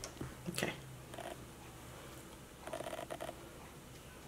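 Faint handling sounds of a makeup brush and eyeshadow palette: a few light clicks in the first second, then a short soft scratching about three seconds in as the brush picks up powder shadow.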